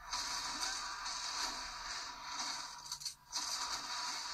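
Movie trailer soundtrack playing back off-screen: a steady, noisy wash of sound effects with music under it, breaking off briefly about three seconds in.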